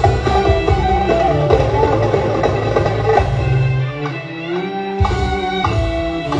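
Live band with violins and percussion playing an instrumental passage of a Turkish song. About four seconds in, the bass and drums drop out for roughly a second, then come back in.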